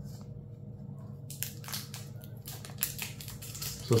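Scissors cutting through a tough, tamper-resistant plastic card pack: a quick, irregular run of sharp snips and clicks starting about a second in.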